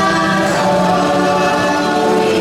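Choral singing from the ride's soundtrack, with several voices holding long notes that move to a new chord about half a second in and again near the end.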